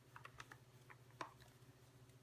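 Faint, irregular soft taps of an ink sponge dabbing ink onto cardstock against a table, several a second, with one sharper tap a little past halfway.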